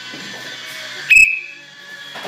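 Music playing, cut about a second in by one short, loud, high-pitched whistle blast that fades within half a second.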